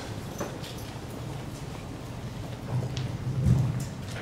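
A few faint, scattered taps and knocks over a low room hum, with a low rumble about three seconds in, typical of footsteps and a microphone being handled.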